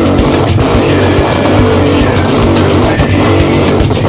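Heavily distorted electric guitar tuned down to low F#, playing a heavy nu-metal riff over a steady beat.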